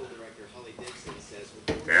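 A single sharp knock about 1.7 s in as the Corvair Spyder engine being lowered from the car comes down onto its support, after faint low voice sounds.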